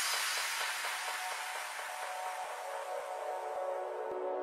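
A soft, hissing noise wash fading slowly, with faint held musical tones gradually building beneath it into a quiet ambient background-music track; a few faint ticks.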